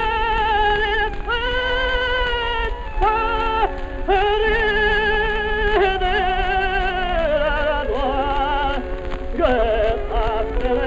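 Acoustically recorded 1906 Sterling phonograph cylinder playing a male opera singer in a slow aria, held notes with wide vibrato in phrases broken by short breaths, over sustained accompaniment. The sound is narrow and dull, with no treble, and a low rumble and surface noise run under it.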